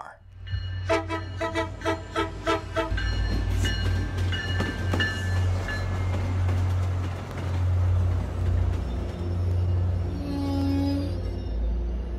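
MBTA commuter rail train with its diesel locomotive passing close by, a steady low engine rumble throughout. A rapid, evenly repeated ringing sounds for about two seconds a second in, and a short horn toot sounds near the end.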